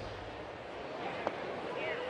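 Steady murmur of a ballpark crowd, with a single short pop about a second and a quarter in as the pitch reaches the catcher's mitt.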